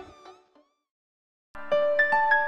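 A cartoon voice trails off in the first half second, followed by about a second of silence. Keyboard background music then starts with sharp, sustained notes about one and a half seconds in.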